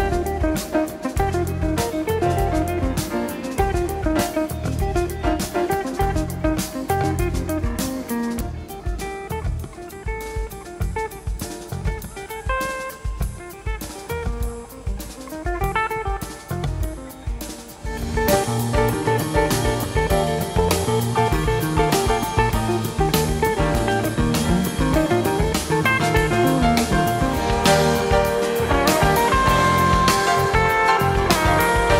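Recorded band music with guitar and drum kit, played softly and dropping quieter still through the middle, then swelling back up to a fuller, louder level a little past halfway: the music's dynamics falling and rising.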